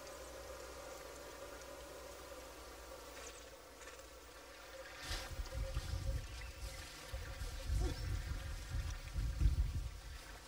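Faint outdoor ambience: a steady low hum, joined about halfway through by irregular low rumbling that comes and goes.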